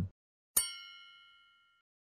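A single bright electronic chime, struck once about half a second in, ringing with several clear tones that fade away over about a second.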